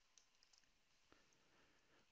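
Near silence: room tone, with two very faint clicks, one shortly after the start and one about a second later.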